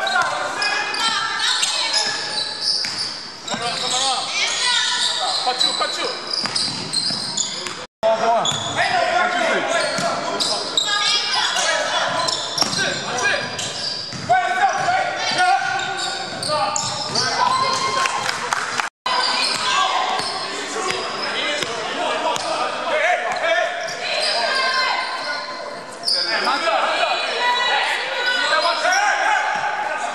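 Basketball game in a gym hall: a ball bouncing on the hardwood floor among players' indistinct shouts and calls, all echoing. The sound drops out completely for an instant twice, about a third and two-thirds of the way through.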